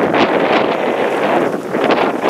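Strong wind buffeting the microphone: a loud, steady rushing with gusty swells.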